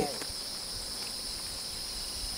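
Insects droning steadily at a high pitch, with no change across the pause.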